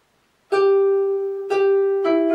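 Harp plucked twice on the same note about a second apart, each note ringing on. These are the opening single notes of the melody, played without octaves. The first half second is silent.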